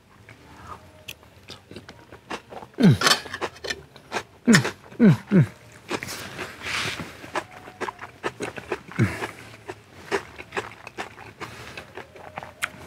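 A man chewing a mouthful of food, with soft clicks and smacks of chewing throughout and several short hums of enjoyment that fall in pitch, about three seconds in, a cluster around five seconds, and once more near nine seconds.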